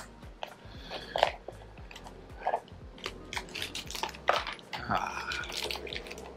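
A small cardboard blind box being torn open by hand: irregular crackling, crinkling and tearing of the packaging.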